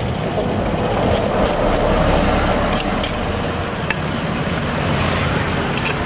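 Road traffic noise: a steady rumble and hiss of vehicles passing on the road beside the stall.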